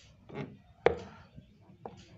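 Flat-head screwdriver prying at a refrigerator door's bottom hinge: a short soft scrape, then one sharp click a little under a second in, and a faint tick near the end.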